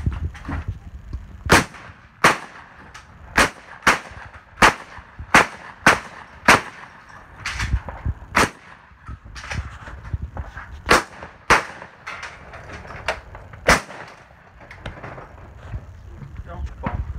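A string of about a dozen gunshots from a competitor's firearm in quick, uneven succession, mostly half a second to a second apart, with a longer gap of a couple of seconds midway.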